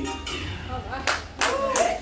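Hands clapping, about three separate claps starting about a second in, with a voice calling out over them.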